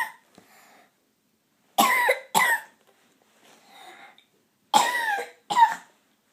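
A young girl's voice making two pairs of short, harsh vocal bursts, a longer one then a quicker one each time, about three seconds apart.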